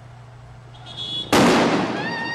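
A single loud bang a little past halfway through, starting suddenly and dying away over about half a second, from a street protest, with a faint high tone shortly before it.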